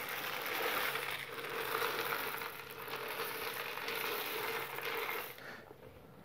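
Dried chickpeas poured from a plastic container into plastic-mesh cells in a glass baking dish, a steady rattling stream that dies away shortly before the end.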